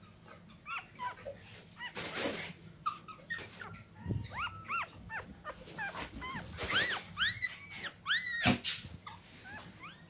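Newborn miniature pinscher puppy squeaking and whimpering: a string of short, high squeals that rise and fall in pitch, coming thicker and louder in the second half, with a few brief rustles between them.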